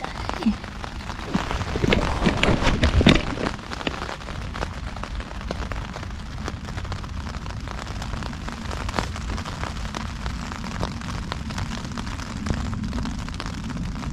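Rain pattering steadily on a Hilleberg tent's flysheet, heard from inside the tent as a dense patter of small drops. A few louder rustles and knocks come in the first three seconds.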